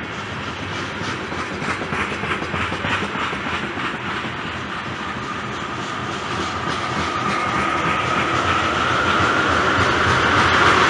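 Freight train tank cars rolling past, their steel wheels clicking over rail joints. A high steady whine comes in and grows louder during the second half.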